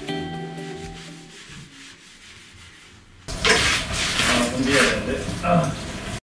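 Background music fades out over the first second or so. From about three seconds in comes loud hand scrubbing: repeated rough rubbing strokes of a brush or cloth on hard surfaces.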